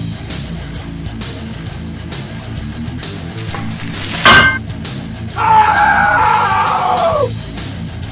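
Heavy rock background music with a steady beat. About four seconds in, a thin high tone ends in a sudden crash. Then comes a loud roar sound effect for a cartoon dragon, about two seconds long, which drops in pitch as it fades.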